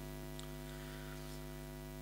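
Faint, steady electrical mains hum from the microphone and sound system: an unchanging buzz of evenly spaced tones.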